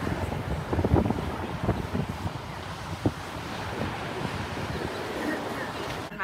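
Ocean surf washing onto a sandy beach, with wind buffeting the microphone in uneven low gusts.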